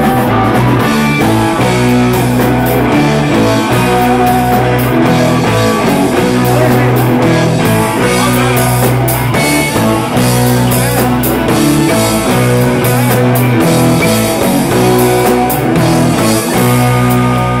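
Band playing rock live in a rehearsal room, loud and continuous: keyboard and drums over low sustained bass notes, with regular drum strokes.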